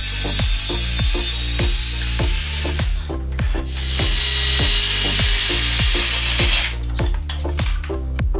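Electric drill boring into the metal frame of a caulking gun, in two runs: one of about two seconds at the start and another of about two and a half seconds from about four seconds in. Background music with a steady bass beat plays throughout.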